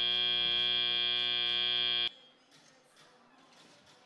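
FIRST Robotics Competition end-of-match buzzer: a loud, steady buzz that cuts off suddenly about two seconds in, signalling that the match time has run out.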